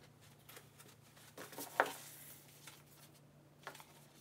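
Faint rustling and crinkling of a thin clear vinyl (plastic) sleeve piece being picked up and handled, with a few short crackles, the sharpest a little before two seconds in. A faint steady low hum runs underneath.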